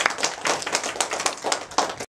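Small group of people applauding by hand: quick, irregular, overlapping claps.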